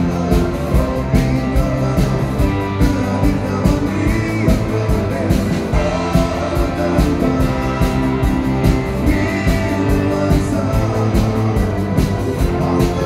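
Live rock band playing at full volume: drum kit keeping a steady beat under electric guitars.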